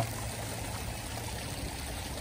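Water running steadily into a koi pond from its waterfall and filter, with a low steady hum beneath it.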